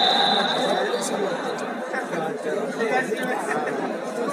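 Several people talking at once, an overlapping chatter of voices in a large sports hall.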